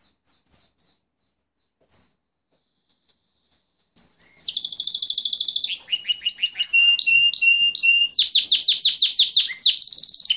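Fife Fancy canary singing: a few soft cheeps and a single short call in the first two seconds, then from about four seconds in a loud, unbroken song of fast trills, each run of repeated notes switching to a new pitch every second or so.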